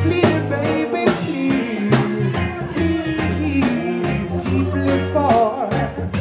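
Live reggae band playing: deep bass notes and a drum kit keep a steady rhythm under keyboard, with a melody line sliding up and down over them.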